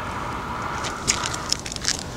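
Gritty scuffing and crunching of shoes on asphalt roof shingles: a steady rustle at first, then a run of sharp crackling clicks from about a second in.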